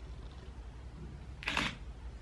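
Steady low hum of a car's cabin, with one short hissing noise about one and a half seconds in.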